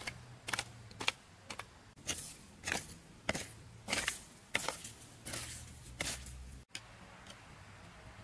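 Hoe blade chopping into and scraping through loose soil in quick repeated strokes, about two a second, then stopping abruptly near the end.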